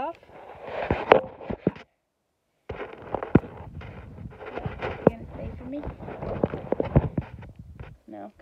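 Close, dry crackling and crunching with many sharp clicks, as hands break up moss and crumbled rotting-wood substrate right by the microphone; it stops dead for under a second about two seconds in, then goes on.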